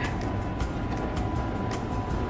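Steady low background rumble with faint music and a thin, unbroken high tone running through it.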